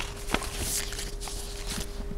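Papers being handled on a table: a soft rustle and one sharp tap about a third of a second in, with a few fainter ticks, over a steady electrical hum.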